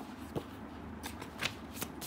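Paper pages of a workbook being turned by hand: several short, crisp rustles and crackles of paper.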